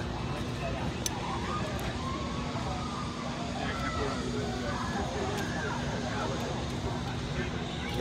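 Faint chatter of several people talking in the background over a steady low hum and rumble.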